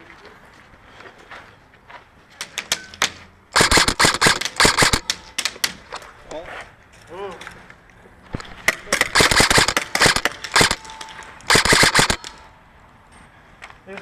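Airsoft guns firing: a few single shots, then several full-auto bursts of rapid, sharp clicking shots, each lasting one to two seconds.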